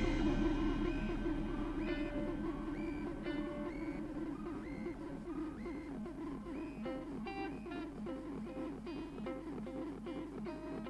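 Instrumental rock jam winding down: electric guitar picking sparse, quiet single notes over a steady, wavering held tone. The ring of the preceding drum hit fades over the first few seconds.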